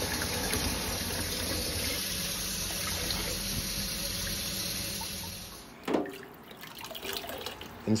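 Kitchen tap running steadily into a stainless steel sink, the stream splashing over and into a glass bottle held under it. The water fades out a little over two-thirds of the way in, followed by a single short sharp sound.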